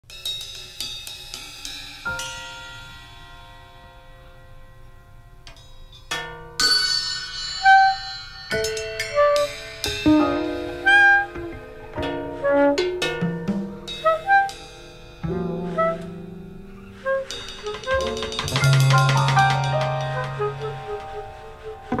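A small jazz group plays a free-tempo introduction: cymbal and drum strokes mixed with struck, ringing notes, sparse at first and busier from about six seconds in, with a held low note near the end.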